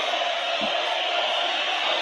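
Steady, even background noise in a live football-match broadcast feed, hiss-like and held at a constant level.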